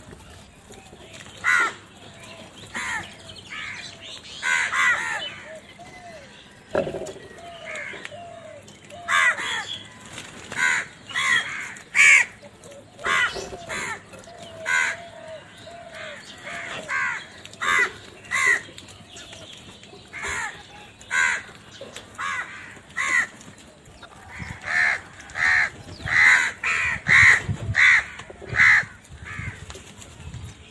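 House crows cawing over and over, many short harsh caws from several birds overlapping, coming faster and louder toward the end.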